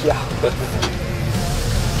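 Steady low engine and road hum of a car, heard from inside the cabin while it drives, with a short spoken "yeah" at the start.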